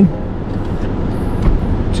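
Steady road and engine noise inside a moving car's cabin, mostly low in pitch, with a brief low bump about one and a half seconds in.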